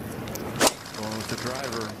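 A golf club striking a teed ball: one sharp crack about two-thirds of a second in.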